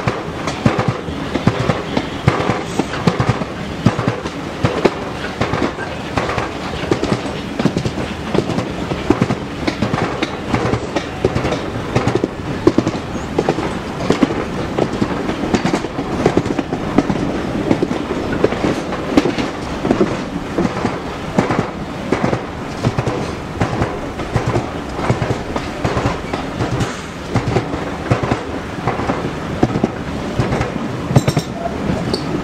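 Railway carriages running along the track, the wheels clattering with rapid, irregular clicks over rail joints, heard from an open carriage window.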